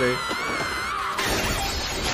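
Crash sound effect from an anime soundtrack: a high wavering tone for about a second, then a sudden burst of shattering, crashing noise that carries on to the end.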